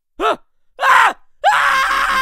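A cartoon voice shouts 'ya!', gives a short cry, then about one and a half seconds in breaks into a long, loud scream.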